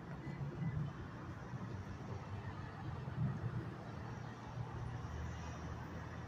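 Faint, steady low hum of a car engine left idling.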